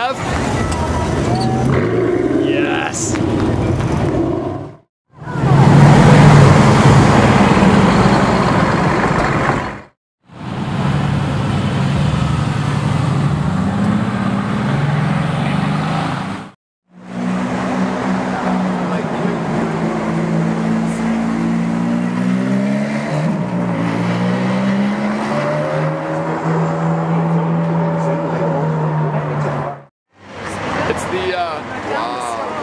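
Exotic car engines in a run of short street clips cut together, with brief dropouts between clips: an Aston Martin Vanquish Volante's V12 driving past, a Mercedes-AMG GT roadster's V8 pulling away, and in the last clip an engine rising and falling in pitch again and again as it revs through the gears.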